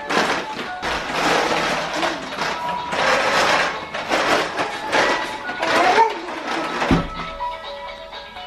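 Music, with the rattle of a baby's plastic push walker rolling across a wooden floor, and a single thump about seven seconds in as the walker runs into the door.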